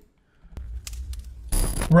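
Low, steady rumble inside a car's cabin, with a few faint clicks. About one and a half seconds in comes a short burst of hiss as a handheld two-way radio is keyed, just before a man starts speaking into it.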